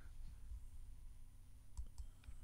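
Quiet room tone with a few faint computer clicks shortly before the end.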